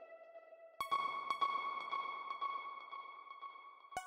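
Ambient electronic music. A held synthesizer tone fades, then a new ringing, ping-like note is struck about a second in and slowly decays, over faint, evenly spaced ticks. Another note is struck at the very end.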